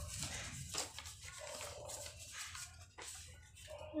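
A sheet of A4 paper being folded and creased by hand, with a couple of brief rustles, and faint short held tones in the background during the first half.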